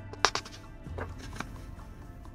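Soft background music, over which a page of a paper colouring book is turned by hand: a sharp paper snap about a quarter of a second in, then a few lighter paper clicks.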